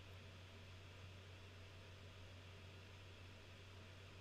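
Near silence: room tone, a faint even hiss with a steady low hum.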